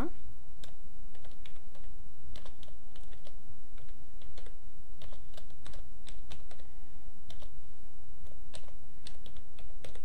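Computer keyboard typing: irregular keystroke clicks as a few short words are entered, over a steady low hum.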